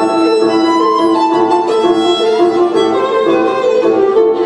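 Recorded show music: a violin melody moving from note to note over sustained lower string notes, played back over the arena's speakers.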